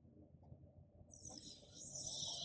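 Near silence: faint room tone, with a faint high hiss coming in about a second in.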